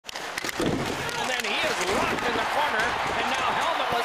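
Ice hockey broadcast: a commentator talking over steady arena crowd noise, with a few sharp clacks of sticks and puck on the ice.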